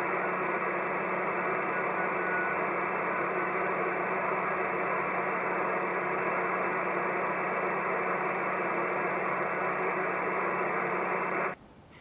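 Shortwave receiver static: the steady hiss of the 40 m band near 7.022 MHz coming through a KiwiSDR web receiver's audio, with a low steady hum and no keyed CW signal breaking through. The hiss cuts off about half a second before the end.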